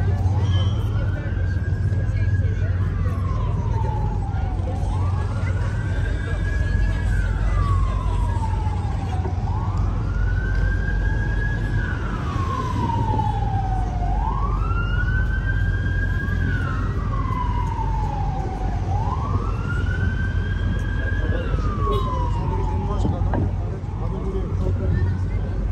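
Emergency vehicle siren in a slow wail: one tone sweeps up quickly, holds, then falls slowly, about five times over, every four to five seconds, over a low city rumble.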